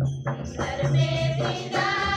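Folk music: a group of voices singing together over percussion with a jingling, tambourine-like rattle, the singing coming in about half a second in after a brief lull.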